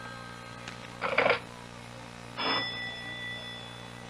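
A doorbell rings twice, about a second and a half apart, the second ring hanging on. At the start, a telephone bell that has been ringing dies away.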